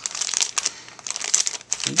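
Thin plastic packaging of a bag of Mod Podge Mod Melts glue sticks crinkling as it is handled and moved, a rapid run of small crackles.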